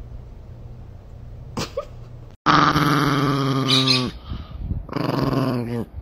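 A small dog, a chihuahua, growling in two long growls. The first starts about halfway through and the second comes near the end, sliding down in pitch as it stops. Before them there is only a faint low hum.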